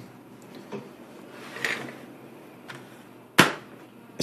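Low, steady room noise with a few faint handling sounds, then one sharp knock about three and a half seconds in.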